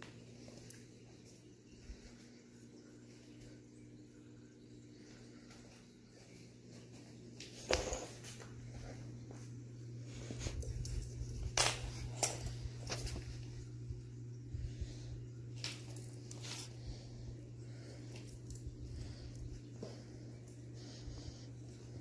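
A golden retriever puppy moving about on a hardwood floor: scattered clicks and knocks of claws and collar tags, busiest in the middle stretch, over a steady low hum.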